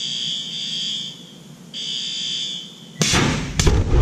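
A warning alarm gives two steady tones, each about a second long, then about three seconds in a dust explosion goes off inside an industrial dust collector during an explosion test: a sudden loud blast that peaks near the end as a fireball vents out of the collector, leaving a low rumble.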